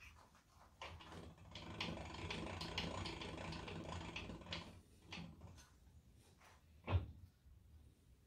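Light metal-on-metal rattling as tooling is handled at a milling machine spindle and vise: a few seconds of fine, rapid clicking, then a single sharp knock near the end.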